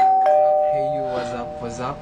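A two-note ding-dong chime like a doorbell. A higher note strikes sharply, a lower note follows about a quarter second later, and both ring on for almost two seconds under a man's voice.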